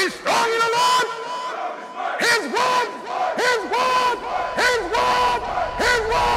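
A group of voices shouting, a string of short loud cries one after another.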